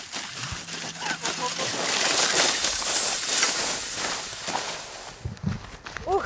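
Old metal-runnered sled sliding down a snowy hillside: the runners hiss over the snow, swelling to a peak a couple of seconds in and then fading as it slows.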